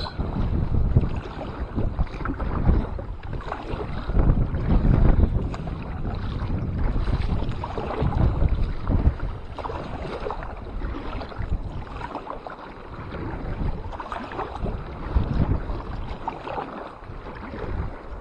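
Wind buffeting the microphone over water sloshing against a plastic sit-on-top kayak on a choppy sea, rising and falling in uneven gusts.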